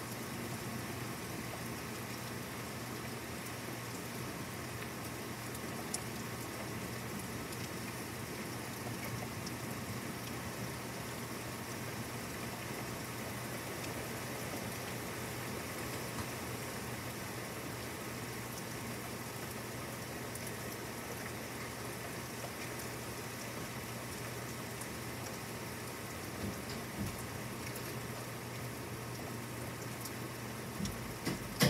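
Steady rain falling, with a few scattered ticks from individual drops.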